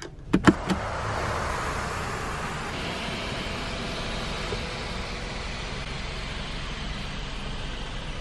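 Electric panoramic sunroof of a Hyundai SUV opening: a couple of clicks at the start, then the motor runs steadily as the glass panel slides back.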